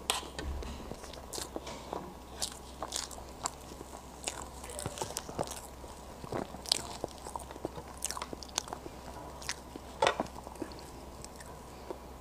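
Close-miked mouth sounds of a person chewing soft matcha crepe cake: many short, irregular clicks and smacks, the loudest about ten seconds in.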